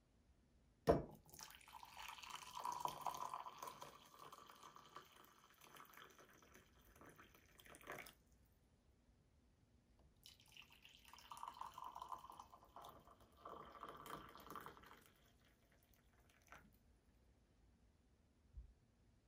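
Brewed coffee poured from a stainless steel Brutrek OVRLNDR French press into glass mugs. A sharp click about a second in, then a steady pour of about seven seconds that stops suddenly, a short pause, and a second pour of about six seconds.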